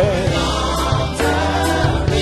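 Live gospel worship music: a band with steady low bass notes and cymbals under choir voices holding sung notes.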